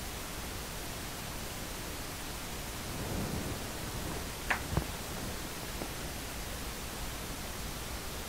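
Steady background hiss, with two faint light clicks about four and a half seconds in from small plastic paint cups being handled.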